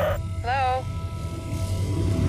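Film-trailer sound mix: a steady low rumble with a few held tones over it, and a short wavering voice about half a second in.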